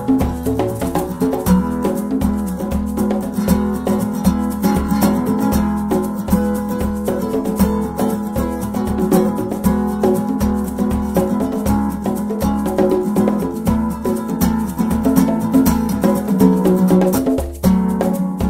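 Acoustic guitar playing an instrumental passage over congas and a shaker keeping a steady, even beat.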